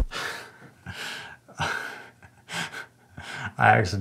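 A man laughing in short breathy bursts, with a louder burst near the end.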